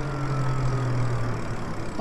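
Lyric Graffiti electric moped-style e-bike riding along: a steady low hum with a faint high motor whine that drifts slightly down in pitch, over tyre and wind noise.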